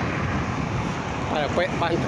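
Steady rush of wind over a phone microphone while riding along a road, with no clear engine note; a man's voice begins about one and a half seconds in.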